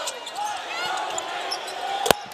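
Live basketball game in an arena: a steady crowd hum, with several short high squeaks of sneakers on the hardwood court and faint knocks of the ball being dribbled.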